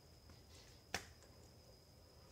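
A single sharp slap of hands on a tile floor about a second in, during a hand-release push-up; otherwise near silence.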